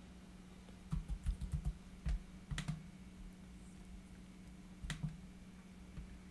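Typing on a computer keyboard: a quick run of irregular keystrokes in the first half, then a couple more keystrokes near the end, over a faint steady low hum.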